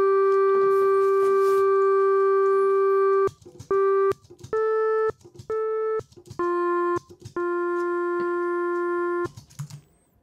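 Clarinet long-tone samples played back after denoising: one steady note held about three seconds, a short repeat of it, two brief slightly higher notes, then two slightly lower notes, the last held about two seconds. Each note starts and stops abruptly as the playback is started and stopped, and the sound is clean, with no room noise between notes.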